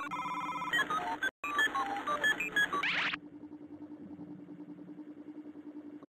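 Computer-style electronic bleeps and chirps at shifting pitches, from an animated DVD menu transition. About three seconds in they give way to a quieter, steady low hum with a fast pulse.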